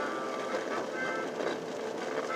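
A vehicle running, heard from inside its cabin: a steady mix of engine and road noise.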